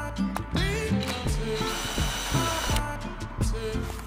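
Background music with a steady beat. About one and a half seconds in, a DeWalt cordless drill-driver runs for about a second, backing out a screw on the motorcycle's headlight.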